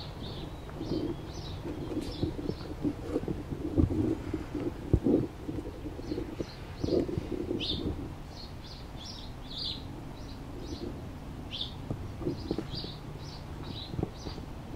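Birds calling in a lakeside soundscape: many short, high chirps throughout, over a lower, repeated cooing call that fades after about eight seconds. A couple of low thumps stand out about four and five seconds in.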